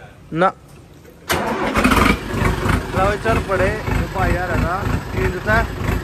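Sonalika DI 50 three-cylinder diesel tractor engine starting. A brief rising whine comes first, then about a second in the engine catches suddenly and runs on with an even, low pulsing beat.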